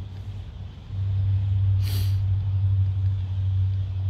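A low, steady engine-like hum that grows louder about a second in, with one short hiss about two seconds in.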